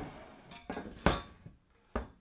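A few short knocks and thunks from handling a wooden shelf unit, the loudest about a second in.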